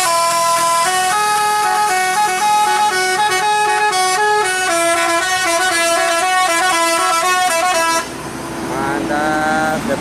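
Tour bus telolet horn, a multi-tone air horn, playing a quick melody of stepping notes, then cutting off suddenly about eight seconds in. Voices follow near the end.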